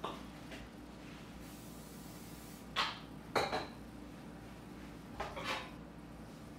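A short hiss of aerosol cooking spray lasting about a second, then a few sharp clinks and knocks of kitchenware, two in the middle and one near the end.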